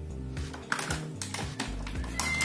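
Background music with steady low notes, over irregular crinkling and clicking of clear plastic packaging as it is handled and pulled open.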